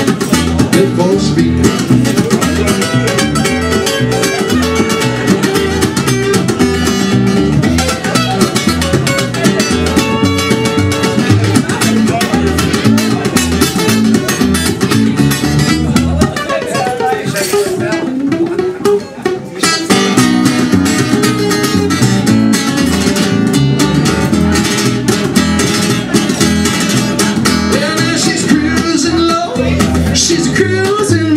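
Acoustic guitar strummed steadily in an instrumental break of a live country song. The playing briefly thins out about two-thirds of the way through, then picks up again.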